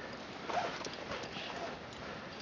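Climbers scrambling on a rocky alpine ridge: boots knocking and scuffing on rock, with hard, irregular breathing close to the microphone.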